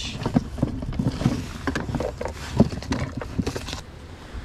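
Scattered knocks and clicks of hands and gear handling a caught fish in a bass boat.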